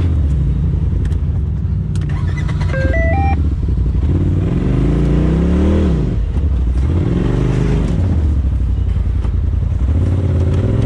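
Polaris RZR side-by-side engine working over rocks at low speed, the revs climbing and dropping twice in the second half. A short three-note rising electronic beep sounds about three seconds in.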